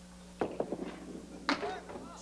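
Candlepin bowling ball dropping onto the wooden lane with a knock and rolling with light clicks, then hitting the pins with a sharp wooden crack about a second and a half in.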